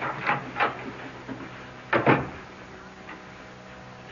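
Radio-drama sound effect of a door shutting with a single thud about two seconds in, after a few lighter knocks, over a faint steady low hum.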